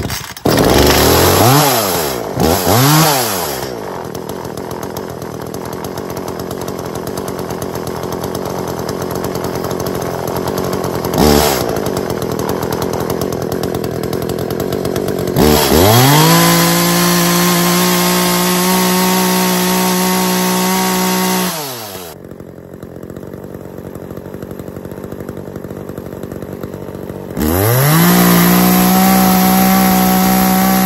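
Echo CS-400 two-stroke chainsaw just started on regular 89-octane gas mixed with two-stroke oil. It gives a couple of quick revs and settles to a lower running speed. About halfway through it is held at full throttle for about six seconds, drops back, and is held wide open again near the end. It revs freely to over 11,000 rpm on a tachometer and sounds better than on the engineered fuel it was drained of.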